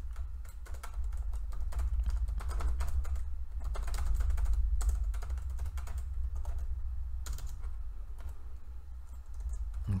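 Typing on a computer keyboard: irregular runs of keystroke clicks over a steady low hum.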